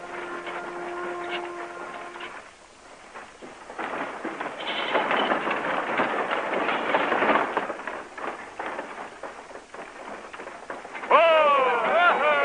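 A musical chord that stops after about two seconds, then the dense clatter and rumble of horses' hooves and wagon wheels as covered wagons and riders come in. Near the end, several loud calls, each falling in pitch, rise over the clatter and are the loudest part.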